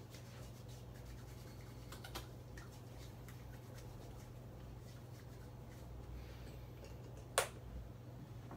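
Hands rubbing together as they work in hand sanitiser, faint over a steady low room hum. A single sharp knock about seven and a half seconds in.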